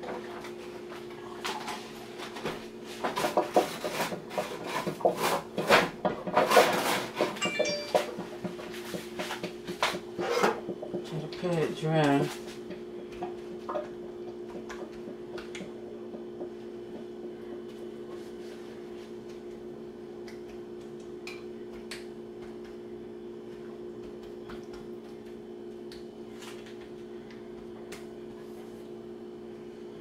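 Paper towel crinkling and rustling as thawed fish fillets are handled and patted dry on a countertop, busy for the first twelve seconds or so. A steady low hum runs underneath throughout and is all that is left after that.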